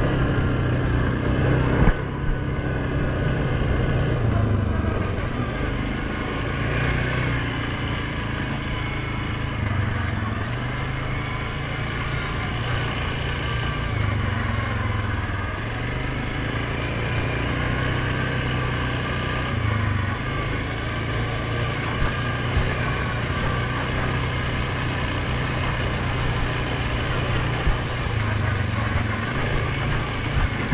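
2019 Suzuki King Quad 750 ATV's single-cylinder engine running steadily on a dirt trail, getting louder and softer every few seconds as the rider works the throttle.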